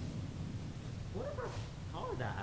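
A short vocal call, two or three quick rising-and-falling pitched sounds about a second in, over a steady low rumble.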